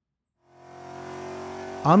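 Supercharged Coyote 5.0 V8 of a Mustang GT, fitted with an Edelbrock E-Force Stage 2 blower, running steadily on a chassis dyno. It fades in about half a second in, after a short silence.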